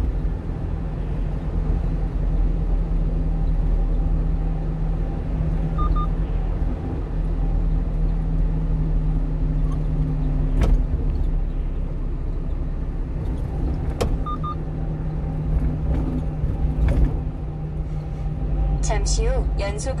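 Steady engine drone and road noise heard inside the cab of a 1-ton refrigerated box truck under way, with a few sharp knocks.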